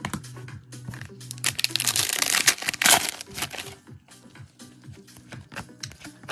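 A foil trading-card pack wrapper being crinkled and torn open, loudest from about one and a half to three seconds in, over background music.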